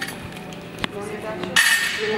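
A sharp click shortly before a second in, then a loud, bright metallic clink that rings on briefly about a second and a half in, as a steel barbell knocks against the floor or another bar.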